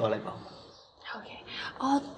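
Speech only: quiet, soft-spoken dialogue, a voice trailing off at the start and further low words about a second in.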